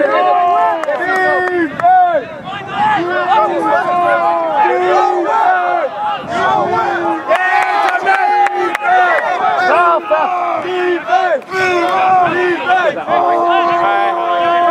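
Several sideline players shouting at once, with repeated drawn-out calls overlapping one another.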